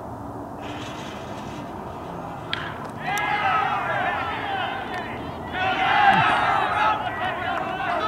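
A baseball bat hitting a pitched ball with one sharp crack about two and a half seconds in, followed by many voices cheering and yelling, swelling twice.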